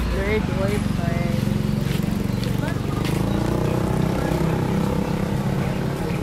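Street ambience: a steady low engine rumble from vehicles, with a few brief voices from the group in the first second.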